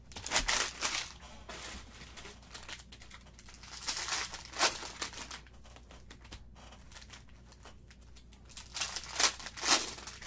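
Plastic cello wrappers of 2019-20 Panini Prizm basketball card packs crinkling and tearing as they are handled and ripped open. The louder rustling comes in three bursts: at the start, about four seconds in, and near the end.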